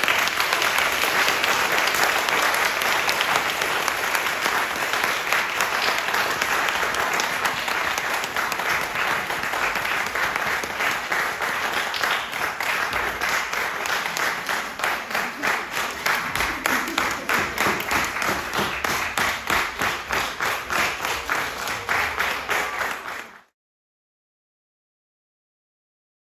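Audience applause, a dense spread of clapping that in its second half settles into rhythmic clapping in unison, about three claps a second. It cuts off suddenly shortly before the end.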